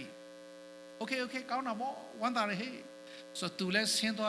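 Steady electrical mains hum from the sound system, heard alone for about the first second, then under a man's voice preaching into the microphone.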